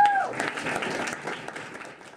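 Audience applauding at the end of a live song, with voices calling out. A short pitched cry rises and falls right at the start. The clapping fades steadily toward the end.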